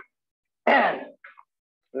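A man clears his throat once, a short loud rasp about two-thirds of a second in. Speech starts just at the end.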